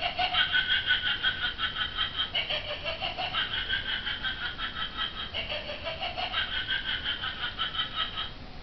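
Battery-operated Halloween witch figure cackling through its small speaker after its wrist button is pressed: a long, rapid 'ha-ha-ha' laugh of about six pulses a second. The laugh shifts pitch about two and a half seconds in and again about five seconds in.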